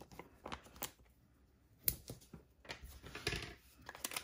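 Quiet rustling and light clicks of a sheet of foam adhesive dimensionals and paper being handled on a craft mat, with a sharper click about two seconds in.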